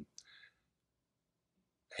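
Near silence, with a faint mouth click and a short breath from a man about a quarter of a second in.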